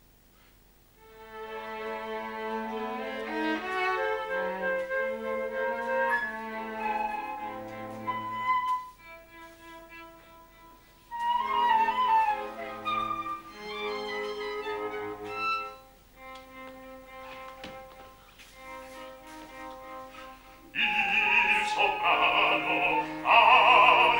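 Small classical ensemble with flute and strings playing contemporary opera music in short phrases broken by quieter passages. Near the end a soprano voice comes in loudly with wide vibrato.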